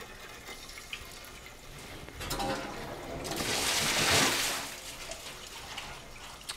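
Water rushing out through the opened main drain of a fire sprinkler riser as the riser is drained down for reset. A short knock comes just after two seconds in, then a loud rush of water swells about three seconds in and fades away after about a second and a half.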